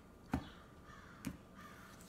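Oracle cards being handled and drawn from the deck over a wooden table: two short sharp card sounds about a second apart, the first the louder.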